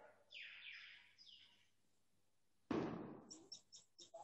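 Faint high chirps that fall in pitch, several in the first second and a half, then a single sudden thump with a short decay about three quarters of the way in, followed by a few light clicks.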